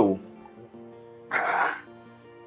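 A man gives one short, rough throat-clearing cough about a second and a half in, over soft background music with held tones.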